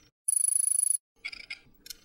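Logo-reveal sound effects: a bright, high, fluttering shimmer lasting under a second, followed by a few short sparkling chimes.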